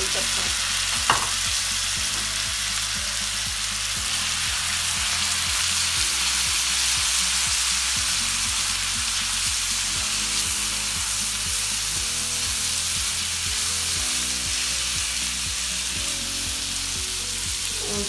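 Chopped tomatoes, onions and spices frying in hot oil on a large iron tawa, sizzling steadily as a spatula stirs them. There is one sharp click about a second in.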